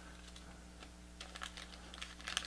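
Faint rustling and light crackling clicks of a folded paper leaflet being unfolded by hand, over a steady low hum.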